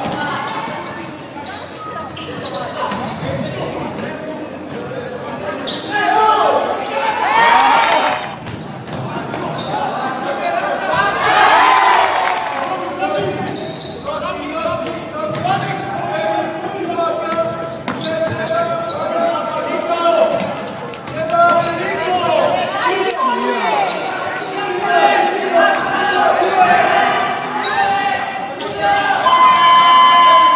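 A basketball bouncing on an indoor court, with voices and crowd noise echoing through the hall; the crowd swells louder twice, about a quarter and about two-fifths of the way through.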